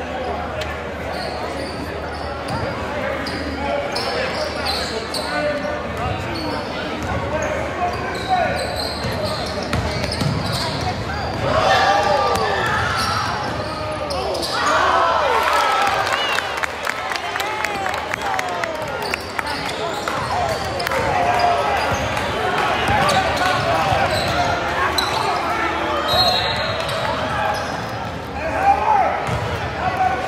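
A basketball bouncing on the hardwood floor of a large gymnasium during play, amid voices of spectators and players, which grow louder and more lively from about a third of the way in.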